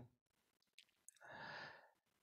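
Near silence broken by one faint breath, drawn in over about half a second, heard over a video-call connection.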